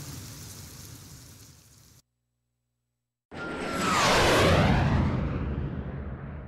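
A steady hiss fades out into a second of dead silence. Then a cinematic transition sound effect cuts in: a swelling whoosh with a deep boom and a falling tone, loudest about a second after it starts, then slowly fading.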